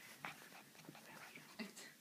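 Very faint small sounds from a Goldendoodle puppy moving about, a few soft scattered clicks with one brief soft whimper-like sound near the end.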